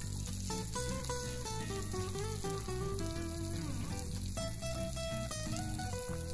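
Background music with held, changing notes, over a low sizzle of cauliflower and garlic frying in oil in a pan.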